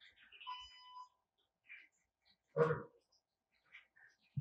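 Roku remote's lost-remote finder chime: a few short high tones in the first second, faint. It is the signal that the remote's find-remote function has been triggered.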